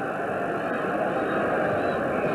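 Steady crowd noise from a large football stadium crowd, heard through an old television broadcast recording.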